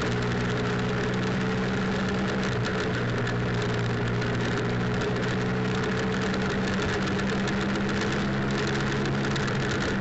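BMW F800 GS parallel-twin engine running at a steady cruising speed, its drone held at an even pitch, over a constant rush of wind and road noise.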